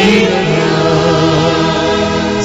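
A choir singing a devotional hymn, holding long notes.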